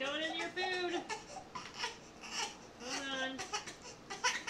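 A hungry four-month-old baby fussing and crying in short wailing cries, one at the start and another about three seconds in. Between the cries a thin plastic milk-storage bag crinkles as it is handled.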